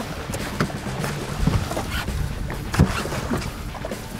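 A hooked muskie thrashing and splashing at the water's surface beside an aluminum fishing boat, with a few sharp knocks and a low steady hum underneath.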